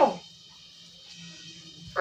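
A held, sing-song prayer syllable in a child's voice falls away just after the start. A pause follows, with only faint room noise and a low steady hum.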